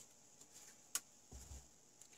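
Near silence with one short, sharp click about a second in and a faint knock shortly after, from hands handling the display and its wiring on a workbench.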